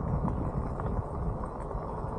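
Rolling noise from a bike riding over a rough chip-seal road: a steady rumble of tyres with small irregular rattles and knocks.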